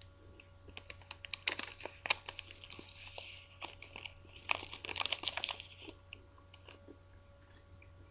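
Small clear plastic package being handled and opened, crinkling and crackling in two busy spells of sharp clicks over about five seconds.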